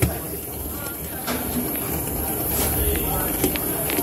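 Steady hissing noise with a low rumble that grows stronger about three seconds in, and a few light metallic clicks from pliers working on copper tubing.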